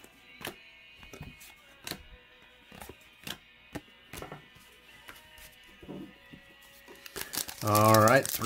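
Stack of cardboard trading cards handled and flipped through by hand: scattered short, sharp snaps and taps, about a dozen, over a quiet background.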